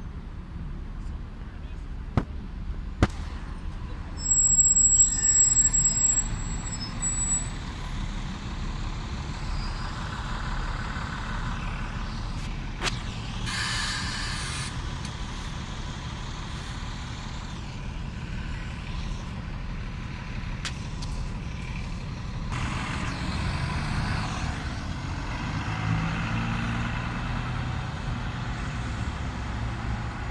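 Ikarus 127V city bus at a stop, its diesel engine running steadily, with a short hiss of compressed air about halfway through as the air brake releases. Near the end the engine works harder and gets louder as the bus pulls away.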